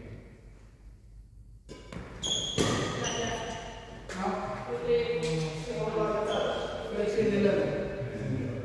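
Badminton play in a large hall: sharp racket hits and high squeaks of shoes on the court floor about two seconds in, followed by players talking, their voices echoing in the hall.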